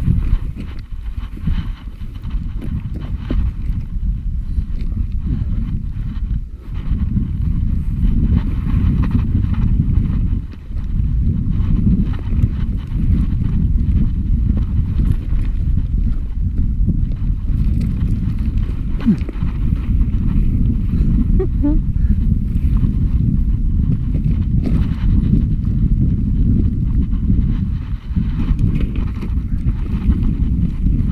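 Wind buffeting an action camera's microphone: a loud, steady low rumble that dips briefly about ten seconds in.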